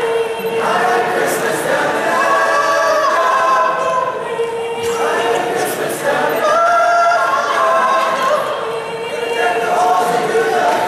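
High school choir singing a cappella, a low note held steady beneath melody lines that move above it, with a solo voice at the front.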